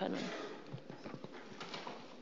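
The last spoken word dies away in a large hall. After that comes quiet room tone with faint rustles and small clicks from sheets of paper being handled.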